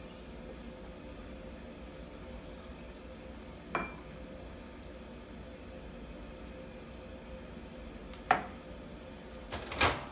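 Glass measuring cup and bowl knocking and clinking as ingredients are tipped in: a clink about four seconds in, a sharper knock a little after eight seconds, and a louder clatter just before the end, over a faint steady hum.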